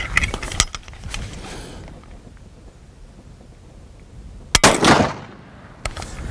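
A single shot from an 1879 Martini-Henry carbine firing a .577/450 cartridge about four and a half seconds in, with its echo trailing off. A short sharp click follows near the end.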